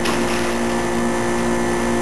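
Water splashing in a small plastic kiddie pool as a child drops into it, a short splash right at the start that dies away within half a second. Under it runs a steady mechanical hum held at a few fixed pitches.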